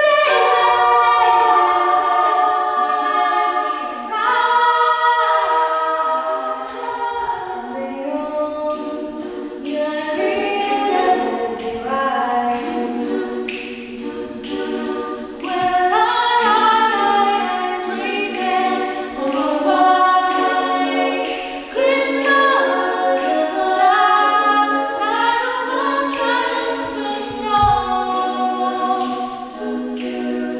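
Small female vocal ensemble singing unaccompanied in several parts, in a church.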